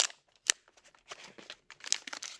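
Plastic card packaging being handled and worked open by hand: a sharp click at the start and another about half a second in, light ticks after them, and a crinkling rustle near the end.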